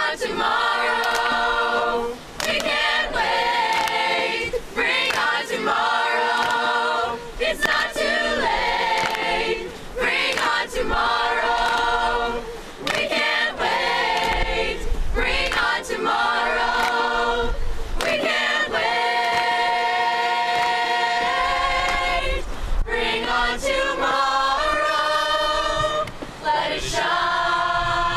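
A small mixed choir of young voices singing a song together unaccompanied, in phrases with short breaths between them and a long held chord about twenty seconds in.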